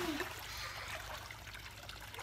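Faint, steady trickling of shallow water in a partly filled above-ground pool.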